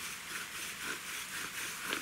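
Willow bow drill spindle squeaking faintly in the fireboard as the bow is worked back and forth, a short squeak about every half second.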